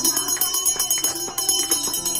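Puja bells ringing rapidly and continuously over devotional music, as during a Hindu aarti.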